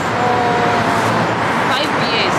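Steady road traffic noise, with a short steady tone of just under a second near the start.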